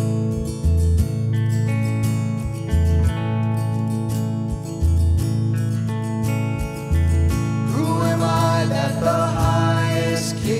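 A live praise band plays a worship song on strummed acoustic guitar, electric guitar, bass and drum kit. A male lead vocal comes in about eight seconds in.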